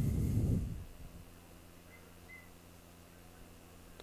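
A brief, muffled, low rumble with a little hiss on top in the first second, like breath or handling on a close microphone. It is followed by quiet room tone with a steady low electrical hum.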